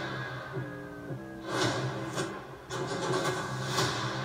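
Movie trailer soundtrack playing back: dramatic music over a steady low drone, with a string of sudden loud hits in the second half.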